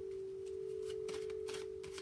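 Tarot cards being handled and laid down on a wooden table: several short, soft rustles and taps in the second half. Under them a steady pure tone holds throughout.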